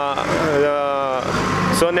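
A man's voice holding one long, steady hesitation vowel for about a second, then starting to speak again near the end, with the low rumble of road traffic behind it.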